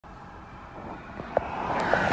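Road traffic noise at a roadside traffic stop, slowly growing louder like a vehicle approaching, with a single click about two-thirds of the way in.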